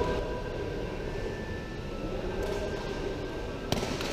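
Steady low rumble of ambient noise in a large indoor sports hall, with one sharp impact near the end: a takraw ball being kicked.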